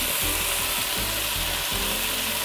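Ground steak sizzling steadily as it fries on high heat in an enamelled cast-iron Dutch oven, with more raw meat sliding in off a cutting board.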